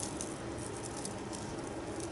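Loose beads clicking and rattling against each other as fingers stir and sift a handful of them in a plastic bin, faint and continuous.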